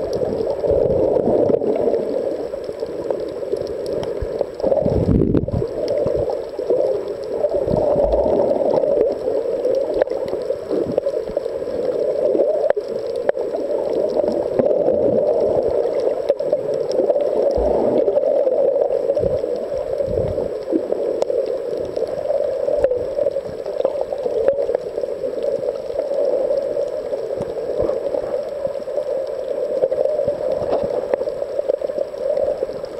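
Muffled underwater noise picked up by a submerged camera: a steady, rushing hum of water with a few brief low thumps now and then.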